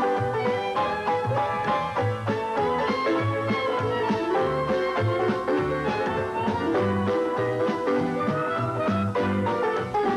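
Upbeat instrumental background music: a melody over a bass line that moves in a steady beat.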